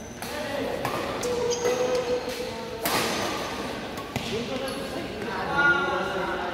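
Badminton rackets striking a shuttlecock during a doubles rally in a large sports hall: a few sharp smacks at irregular intervals, the loudest about three seconds in.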